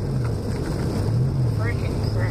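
Jeep driving slowly on a snow-covered road, heard inside the cabin: a steady low engine hum under tyre and road noise, the hum rising slightly in pitch a little past halfway.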